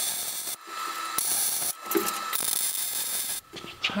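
Arc welding on a steel roll bar tube in three short bursts, each under a second long, with brief pauses between them: the welds being burned in to join the tubing.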